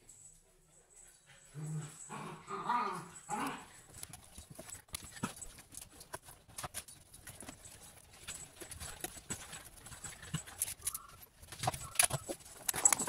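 Light, irregular clicks and taps from a plastic food container being handled. They follow a short whining, voice-like sound about two seconds in.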